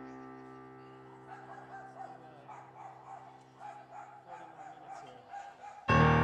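A held electric piano chord fades slowly away over the first few seconds, leaving only faint, uneven background sound. Just before the end, keyboard-led music comes back in suddenly and loudly.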